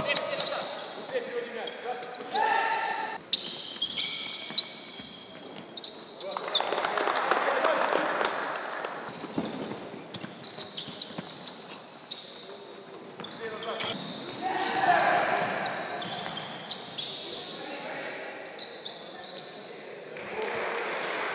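Basketball game in a large gym: a ball bouncing on the court, with a continuous mix of indistinct voices and two louder swells of shouting about seven and fifteen seconds in.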